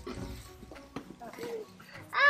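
Toddlers' faint babbling and small vocal sounds, with a few light knocks and handling noises.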